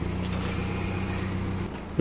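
Nissan GT-R R35's twin-turbo V6 idling with a steady low hum, which stops shortly before the end.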